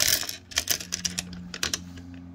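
Small stones clicking and rattling against each other as they are handled, a quick irregular run of sharp clicks that is densest at the start. A faint steady low hum runs underneath.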